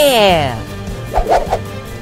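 A high-pitched cheering voice that falls steeply in pitch, over background music, then a quick run of three claps a little after a second in.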